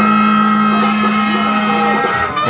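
Live blues-rock band music from a lo-fi audience tape: one long chord held steady.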